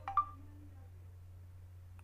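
Computer message-notification chime as a chat message pops up on the desktop: a quick rising chime of a few notes, the last and loudest ringing briefly, over a steady low hum.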